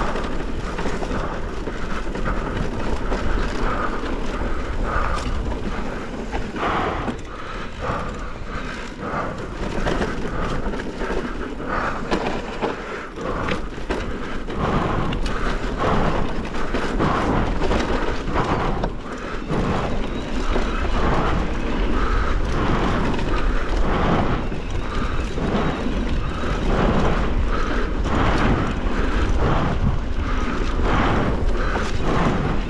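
Mountain bike rolling along a dry dirt singletrack: tyre noise over dirt and loose stones with the bike rattling over bumps, and a steady rumble of wind on the camera mic.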